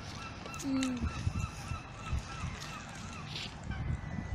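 Geese honking on the pond, a steady series of short calls about three a second, over a low rumble.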